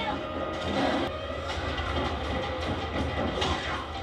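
Action-series soundtrack of a vehicle chase: a heavy transport truck's steady low engine rumble under a film score, with a few short hits.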